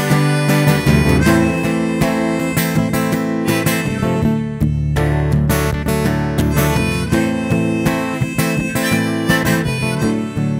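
Harmonica played from a neck rack over a strummed Martin acoustic guitar: held, wavering harmonica notes above a steady strumming rhythm.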